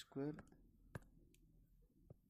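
Stylus tapping on a tablet screen while handwriting: one sharp click about a second in, with a few fainter ticks after it.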